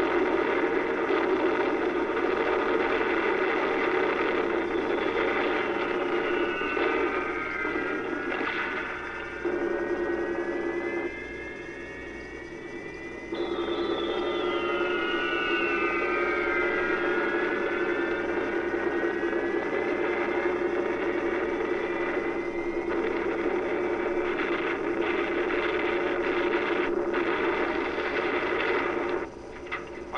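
Steady drone of massed bomber piston engines from a TV soundtrack, heard through a TV speaker. Whistling tones climb slowly over the drone, and twice a set of whistles slides quickly down in pitch, about five seconds in and again after a sudden change about thirteen seconds in.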